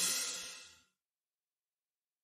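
The closing cymbal crash and chord of a children's song dying away within the first second, followed by silence.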